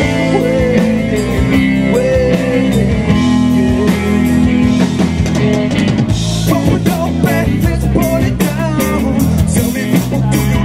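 Live rock band playing through a PA: electric bass, electric guitar and drum kit, steady and loud.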